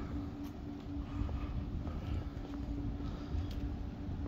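Outdoor background noise: a steady low hum over an irregular low rumble, with a few faint taps of footsteps.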